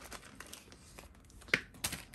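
Light crinkling of a small plastic bag of wooden game pieces being pulled open, with faint scattered clicking and two sharp clicks near the end as pieces knock together.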